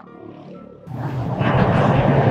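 Background music trails off quietly, then about a second in a loud rushing roar with a deep rumble starts suddenly: outdoor street noise buffeting a handheld camera's microphone.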